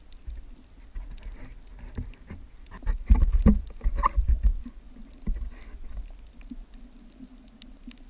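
Water sloshing and splashing around a GoPro's waterproof housing with the camera at or just under the surface. There is a burst of louder splashing and knocks about three seconds in, and a smaller one just after five seconds.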